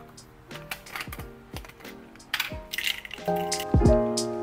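Pills and capsules clicking as they drop into the compartments of a plastic weekly pill organizer, irregularly, over background music with a beat that gets louder about three seconds in.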